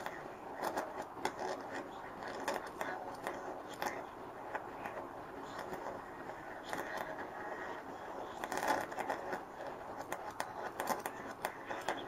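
Flyback transformer high-voltage arc driven as a singing arc, crackling with irregular snaps and giving out a faint, quite distorted trace of the audio signal fed into it.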